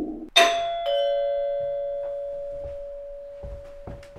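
Two-tone ding-dong doorbell chime: a higher note struck, then a lower note about half a second later. The lower note rings on and fades slowly.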